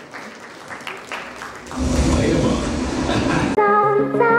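Audience applause and crowd noise in a large hall, with some voices mixed in, swelling to its loudest about halfway through. It cuts off sharply near the end as music begins.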